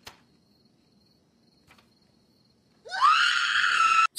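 A woman screams: a loud shriek about three seconds in that rises sharply in pitch, is held high and is cut off abruptly, after near silence.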